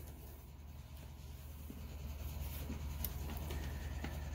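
Faint handling noises: the plastic control box of a Mastercarver Micro Pro micromotor carver being picked up and shifted across a wooden workbench, scuffing and rubbing with a light tap about three seconds in, over a steady low hum.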